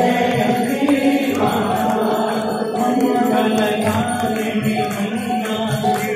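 Hindu aarti hymn chanted and sung by many voices together, in long held notes.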